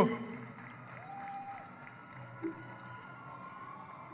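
Faint crowd ambience with distant voices, including a short held tone about a second in and a faint thin tone running through the second half.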